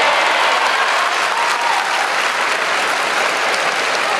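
Large arena crowd applauding, a dense, steady din of clapping.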